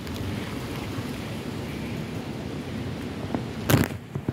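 Wind buffeting the phone's microphone: a steady low rumble, with a brief loud bump near the end.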